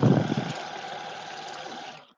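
Oral irrigator (water flosser) running with its tip in the mouth: a steady pump-motor drone under the hiss of the water jet.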